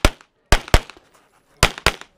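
Handgun shots in an IPSC stage: one shot right at the start, then two quick pairs about a quarter second apart, one pair about half a second in and another near the end. Each is a sharp, loud crack with silence between.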